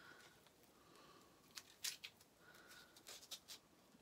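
Near silence with a few faint, short clicks from fingers handling a small pack of pins, a pair about one and a half seconds in and more near three and a half seconds.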